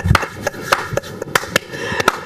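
Two people clapping hands in a short round of applause, the claps uneven and coming about four or five a second.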